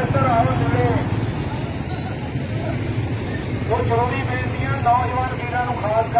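A man's voice speaking or calling out, in a burst at the start and again in the second half, over a steady low rumble.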